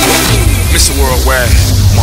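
Electronic dance music from a dubstep/electro house remix. The steady kick drum drops out at the start, leaving a sustained deep bass under rising and falling synth sweeps.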